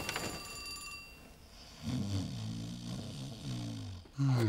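A cartoon polar bear snoring low and wavering, starting about two seconds in, after the fading tail of a thud.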